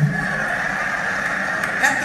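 A short pause in a recorded stand-up comedy routine played over a club sound system, leaving a steady hiss of background noise. The comic's voice comes back in near the end.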